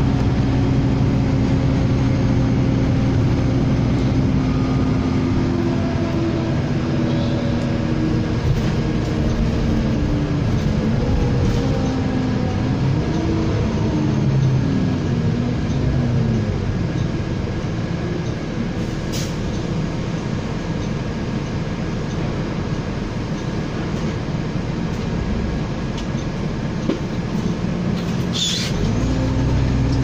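Inside a 2005/06 Nova LFS city bus under way: the steady hum of its engine and drivetrain over road noise. The pitch falls and then rises again in the middle as the bus changes speed, and two brief clicks or rattles come later on.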